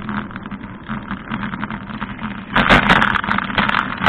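Wind and tyre-on-pavement noise picked up by a bicycle-mounted camera while riding, a steady rumbling hiss. It gets louder and rougher about two and a half seconds in, with a run of rattling knocks.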